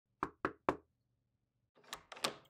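Three quick knocks on a door, about a quarter second apart, followed by a faint click near the end.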